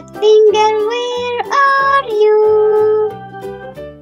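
Children's song: a high singing voice over backing music with a steady beat, the voice holding a long note that ends about three seconds in, leaving the backing music alone.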